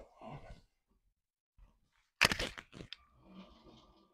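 A short, crackly plastic clatter about two seconds in, then the quieter whir of the Lego City 60337 express train's battery motor with a faint high whine as the train rolls towards the ramp.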